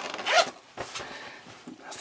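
Zip of a large 200-slot pencil case being pulled open in a few short, rasping pulls, the loudest in the first half second.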